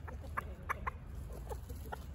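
Chickens clucking: a handful of short, quick clucks in the first second and a fainter one later, over a low steady rumble.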